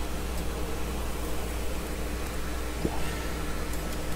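Room tone: a steady hiss with a low electrical hum underneath and one faint tick about three seconds in.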